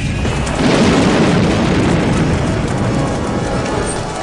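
Trailer music with a big film explosion: a deep boom about half a second in that rumbles on and slowly fades.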